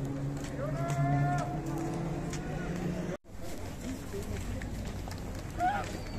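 A man's long, drawn-out low call, held for about three seconds and rising slightly near its end, with a shorter, higher voice over it about a second in, amid street crowd noise. It stops abruptly just after three seconds in.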